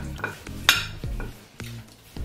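Metal cutlery clinking and scraping on plates while eating, with one sharp clink a little under a second in. A low bass line of background music runs underneath.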